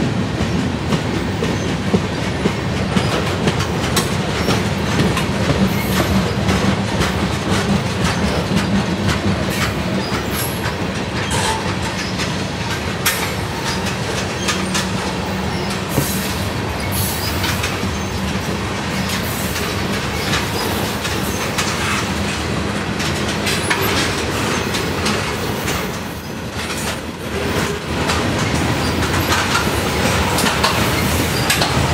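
Mixed freight cars (gondolas, tank cars, covered hoppers) rolling steadily past close by: a continuous rumble of wheels on rail with irregular clicks over rail joints and occasional short, high-pitched wheel squeals.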